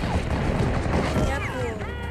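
Film battle soundtrack: a dense din of a cavalry charge, with hooves, clashing and men shouting over a steady low rumble, and music underneath.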